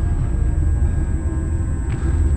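Dark, tense film score with a heavy, steady low drone and held tones above it, and a brief rush of noise near the end.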